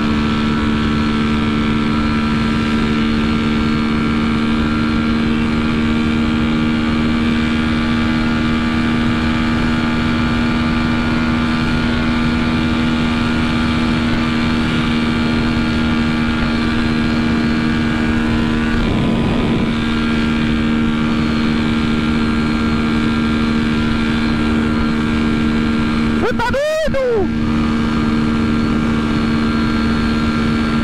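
Honda CB300F Twister single-cylinder engine, fitted with a tuned camshaft, running flat out in sixth gear at about 160 km/h, heard on board with wind noise. The engine note holds one steady pitch, the sign of the bike sitting at its top speed, with a short sweep in pitch near the end.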